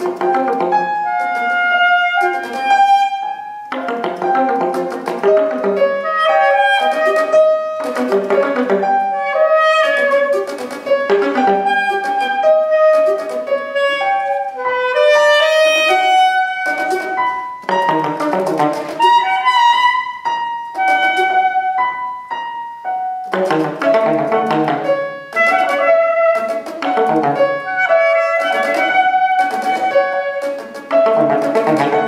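Saxophone and grand piano playing a contemporary chamber duet together: many quick, detached notes and chords with some held saxophone tones, thinning briefly past the middle before growing dense again.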